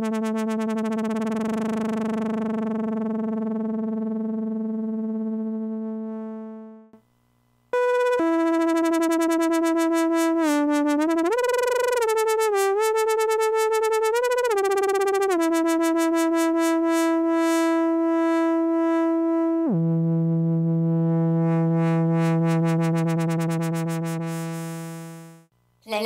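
Camel Audio Alchemy software synthesizer playing long held notes from a keyboard, its filter cutoff and LFO speed swept by rolling a Wii Nunchuk and its LFO filter depth set by tilting it. A low note fades out, then after a short gap a higher note sounds with pitch glides in the middle, and near the end it drops to a lower held note.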